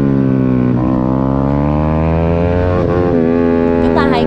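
A 150cc racing motorcycle's single-cylinder engine at racing revs, heard up close. Its pitch falls through the corner, then climbs again as the bike accelerates from about a second in, with another change in pitch near three seconds.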